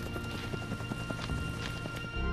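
Background music with a scatter of irregular short knocks over it.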